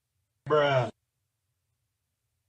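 A man lets out a short voiced sigh, a groan of dismay lasting under half a second, about half a second in.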